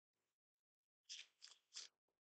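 Near silence, then three faint, short rustles in the second half as hands handle paper.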